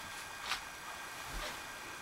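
Quiet room tone with a short soft rustle about half a second in and a faint low bump near the end.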